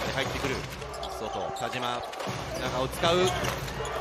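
Basketball game on a hardwood court: the ball bouncing and players' shoes squeaking in short high chirps over steady arena crowd noise.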